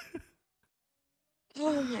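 A man's short, breathy laughing exhale, then about a second of silence before he starts speaking.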